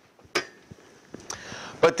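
A sharp click, then a few lighter clicks and handling noise: an office table's locking caster lever being flipped up to unlock the wheel.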